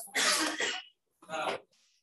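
A man coughing and clearing his throat: one strong burst, then a shorter one about a second later.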